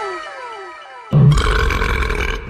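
Cartoon sound effects: several pitched tones slide downward one after another and fade. Just past a second in, a sudden, loud, rough low sound cuts in.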